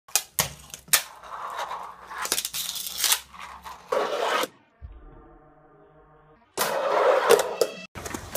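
A fingerboard (miniature finger skateboard) clicking sharply several times and scraping along the edge of a wooden window frame, a rough rolling, grinding noise. It stops for about two seconds in the middle, then scrapes along a rail again near the end.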